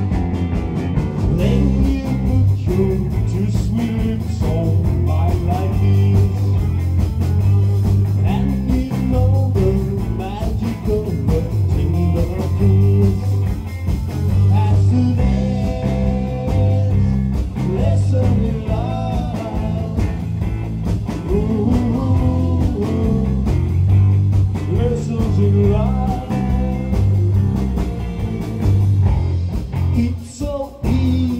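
A live rock and roll band playing: electric guitars, one a hollow-body, over a drum kit with a stepping bass line, recorded on a phone's microphone.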